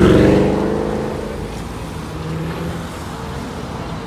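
A car passing close by: its engine note, loudest at the start, drops slightly in pitch and fades over about a second and a half. Steady street traffic noise follows.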